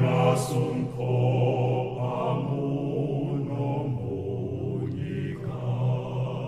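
Church choir singing a hymn in long, held notes, the voices blending with slow changes of pitch.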